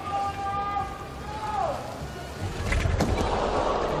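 A gymnast falling from a missed Kolman release on the high bar and landing on the mat with a low thud about three seconds in, followed by a swell of crowd noise. Before the fall a long held tone carries over the arena and drops away under two seconds in.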